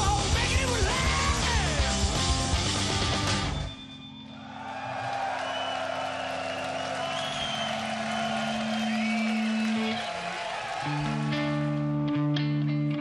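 Live rock band, electric guitars, bass and drums with a singer, playing loudly and stopping together about four seconds in. A crowd cheers over a held, ringing guitar note, and near the end a guitar starts ringing new notes.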